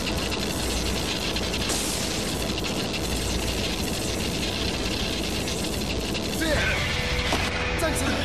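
Tokusatsu transformation sound effect: a dense, steady electric crackle with music under it. A character's voice comes in near the end.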